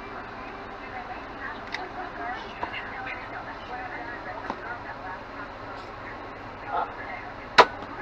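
A few small plastic clicks as a micro Llama toy dart blaster is handled, then, near the end, one sharp, loud snap of its spring firing with no dart loaded.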